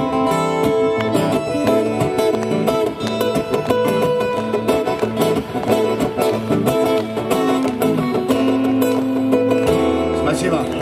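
Live acoustic band of two acoustic guitars and an accordion playing an instrumental passage, with a long held note near the end.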